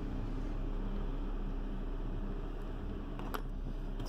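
Steady low hum and hiss of room noise, with a faint tap a little over three seconds in.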